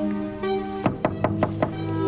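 Knocking on a door, about five quick raps in the second half, over background music with sustained tones.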